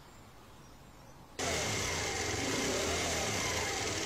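Faint background for about a second and a half, then a motorcycle engine running steadily cuts in suddenly.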